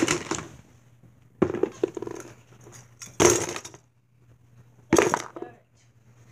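Handling noise: a handheld phone bumping and rubbing against toys, in four short bursts about a second and a half apart, with quieter rustling between.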